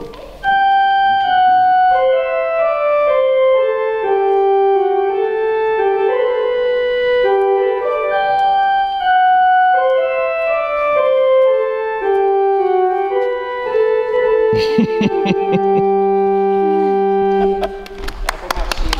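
Organ playing a slow processional melody in long held notes. Near the end a lower note is held under the melody and a few short knocks sound.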